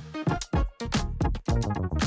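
Electronic background music with synthesizer tones and a quick, steady drum beat.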